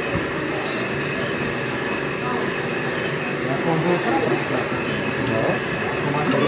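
A steady mechanical hum with several high, whining tones held throughout. A murmur of voices grows louder in the second half.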